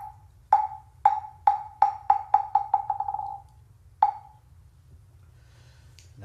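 Korean Buddhist moktak (wooden fish) struck in a roll that speeds up and fades away, about a dozen hollow wooden knocks over three and a half seconds, then one single stroke about a second later. This is the customary signal that opens a chant. A faint low hum runs underneath.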